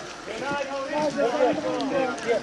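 Men's voices talking in the background among a film crew, indistinct and quieter than the nearby speech.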